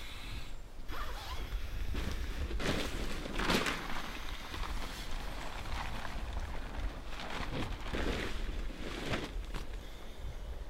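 Tent zippers pulled and nylon tent fabric rustling in several separate strokes, the loudest about three and a half seconds in, over a steady low rumble.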